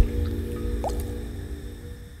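Electronic sound design for an animated intro, fading out: sustained low tones with squelchy, dripping sounds, styled as a rumbling stomach. A low thud at the very start, a couple of droplet blips about a second in.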